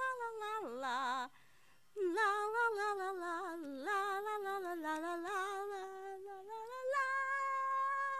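A girl humming a wordless tune in a high voice, with long held notes and a wavering one about a second in. There is a short break just after, then the tune carries on, gliding up and down between notes.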